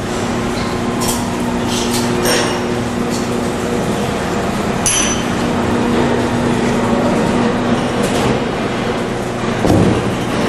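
Packaging line machinery running: a vibratory feeder, bucket elevator and combination weigh scale giving a steady hum, broken by scattered light clinks and knocks.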